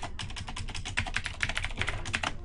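Typing on a computer keyboard: a quick, steady run of keystrokes, about ten a second.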